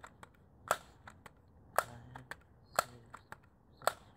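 Daisy Powerline 35 multi-pump air rifle being pumped: the pump lever clacks once per stroke, about once a second.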